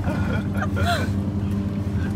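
Car engine and road noise inside the cabin while driving, a steady low hum, with a brief faint voice about halfway through.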